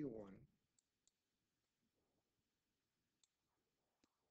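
Near silence: room tone, with three faint, short clicks scattered through it.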